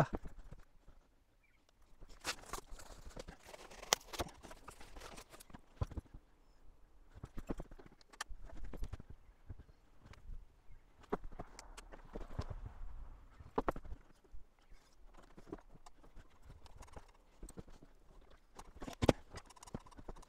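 Work boots stepping on a concrete floor, with irregular knocks and taps.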